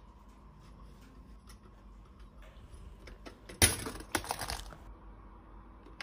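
Pop-up toaster mechanism giving one sharp metallic clatter, with a few quick rattling clicks after it, about three and a half seconds in, over faint room noise.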